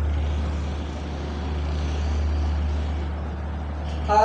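Steady low hum, with a faint background hiss.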